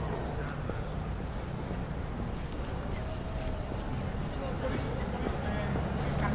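Steady town-street ambience: a low traffic rumble, the voices of passers-by, and footsteps on paving.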